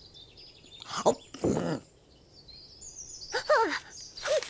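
Wordless cartoon-creature vocal sounds: a short, sharp exclamation about a second and a half in, then a squeaky gliding 'ah' near the end. A faint high tinkling plays in the first second.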